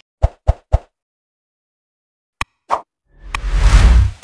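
Animation sound effects: three quick pops in a row, then a short click and another pop, then a swelling whoosh with a low rumble near the end.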